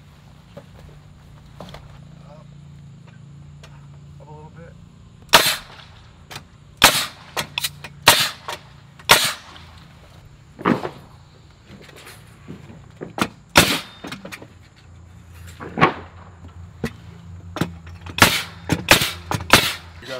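Pneumatic framing nailer driving nails into a wooden ledger board: a dozen or more sharp shots at irregular intervals from about five seconds in, some in quick pairs and a fast cluster near the end.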